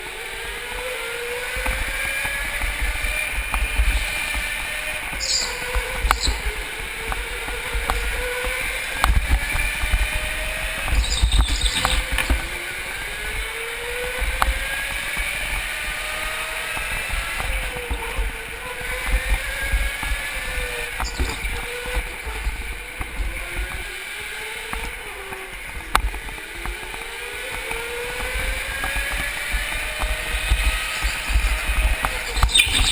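Go-kart motor heard onboard, its pitch rising as the kart accelerates along the straights and dropping at each corner, several times over, with wind buffeting the microphone.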